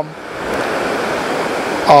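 A steady rushing hiss of noise with no tone in it. It swells up over the first half-second after the voice stops, then holds even until speech resumes near the end.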